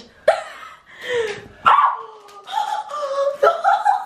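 A girl laughing in several bursts.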